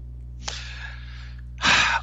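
A man breathing close to a microphone: a soft breath lasting about a second, then a short, louder intake of breath near the end.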